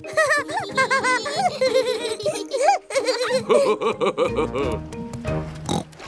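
Cartoon background music, with cartoon pig characters giggling and snorting in short bursts over it.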